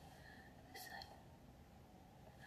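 Near silence: room tone, with one brief faint whisper just under a second in.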